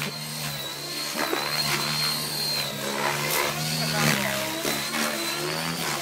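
KDS Innova 700 radio-controlled helicopter in flight: a steady high-pitched whine over a low rotor hum, the whine wavering slightly in pitch as it manoeuvres.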